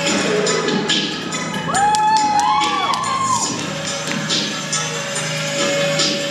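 Routine music playing, with audience cheering and whoops rising over it about two seconds in and lasting a second or two.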